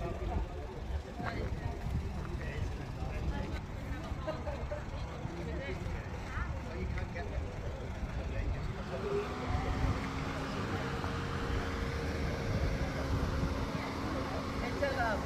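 Low rumble with faint background voices; about eight seconds in, a vehicle engine's pitch rises and then holds steady.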